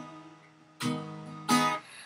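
Acoustic guitar strummed: a chord rings out and fades over the first moments, then two more chords are strummed, just under a second in and again at about one and a half seconds, each left to ring.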